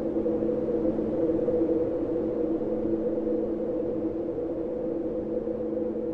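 Ambient electronic music: a synthesizer drone holding a steady chord of three low notes over a low rumbling noise bed.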